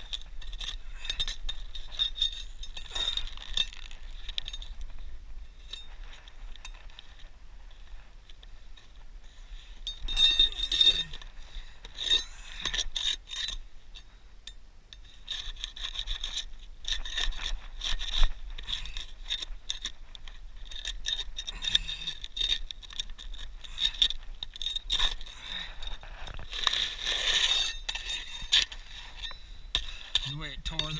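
Steel flat bar scraping and prying under asphalt shingles, grating against the granules, with sharp clicks and clinks as the metal catches shingle edges and nails. It comes in bursts of work, loudest about ten seconds in, again around sixteen to eighteen seconds and near the end.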